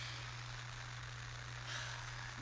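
A steady low hum with faint background hiss, and a soft breath near the end.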